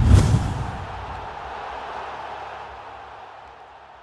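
Outro logo sting: a sudden deep hit at the start, then a long wash of sound that slowly fades away.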